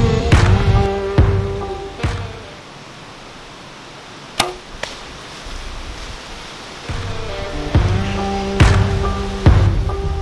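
Rock music drops out for a few seconds of quiet, broken by the sharp snap of a bow being shot about four and a half seconds in and a fainter knock just after; the music then comes back.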